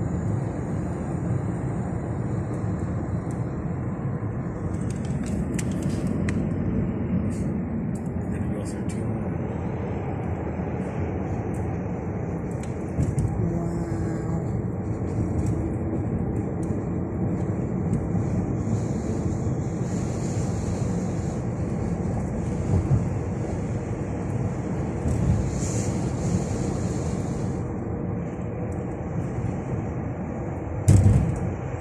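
Steady road noise heard inside a moving car's cabin: a continuous low rumble of tyres and engine at highway speed.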